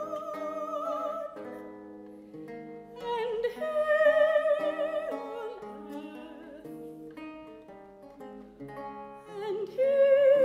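A soprano sings a Renaissance lute song with vibrato, accompanied by a plucked lute. The voice pauses twice, leaving the lute playing alone for a few seconds each time.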